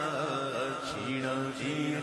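A male voice singing a Punjabi naat through a microphone and sound system, unaccompanied chant-like singing. The notes waver in pitch at first, then are held long and steady.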